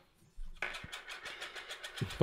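Rapid run of light clicks from computer input at the desk, starting about half a second in.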